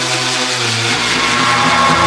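Drum and bass mix in a beatless stretch: sustained, layered electronic synth tones with no drum hits. A higher synth tone comes in a little over a second in.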